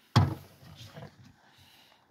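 One sharp wooden knock just after the start, dying away quickly, as the circular saw or the board is set down on the board across the bucket. Faint handling and rustling sounds follow; the saw is not running.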